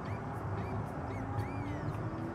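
Birds chirping outdoors in short rising-and-falling notes about twice a second, over a steady low background hum.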